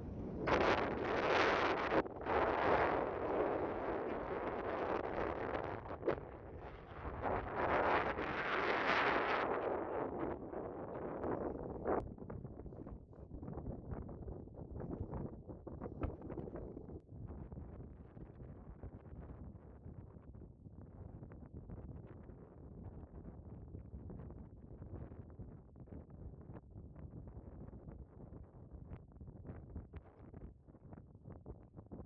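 Wind buffeting the microphone: a loud, gusty rush for about the first ten seconds, then a softer, steady rush.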